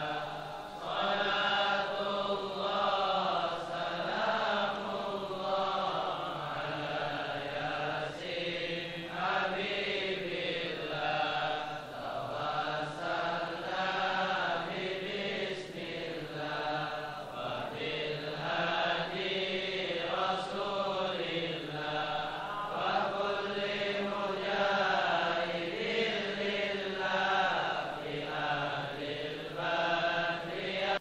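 Voices chanting an Arabic sholawat, a devotional blessing on the Prophet, in a slow melody of long drawn-out notes.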